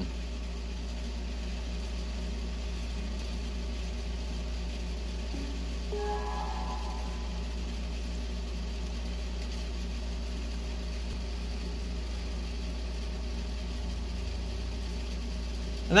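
Steady low background hum with no other activity, and a faint, brief cluster of tones about six seconds in.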